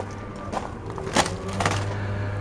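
A few soft footsteps or knocks over a steady low hum.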